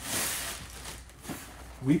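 Rustling of a large printed shopping bag being handled as a tote bag is pulled out of it, loudest in the first half second.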